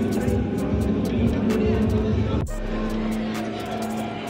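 Background music with a steady beat and held notes, with an abrupt break in the track about two and a half seconds in.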